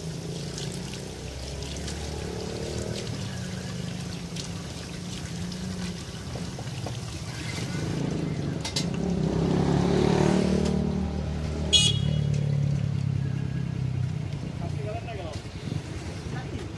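Street traffic going by, with one vehicle passing most loudly near the middle, rising and fading away. A single short, sharp clink rings out just after it.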